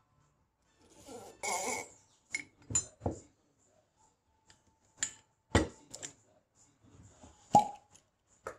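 A corkscrew being worked into the cork of a glass wine bottle: a run of scattered clicks and knocks of metal on glass and cork, then the cork pulled out with a sharp pop near the end.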